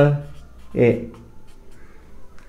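Marker pen writing on a whiteboard, with faint scratching strokes in the quieter second half.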